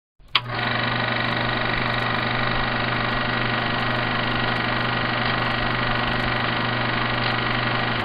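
A click, then a steady, unchanging drone: a low hum with a few steady higher tones over an even hiss, machine-like in character.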